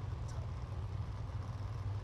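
Top Alcohol Funny Car engine idling at low revs, a low steady rumble, as the car backs up toward the starting line.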